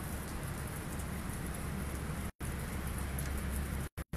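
Sleet, a mix of snow and rain, falling steadily, making a constant hiss on the ground and surroundings. The sound cuts out for an instant twice in the second half.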